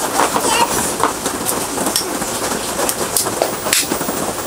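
Steady rain falling, with a few sharp plastic clicks as a GoPro is pressed into its clear waterproof housing; the loudest click comes shortly before the end.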